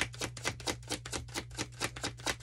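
A deck of tarot cards being shuffled by hand: a fast, even run of clicks, about eight to nine a second.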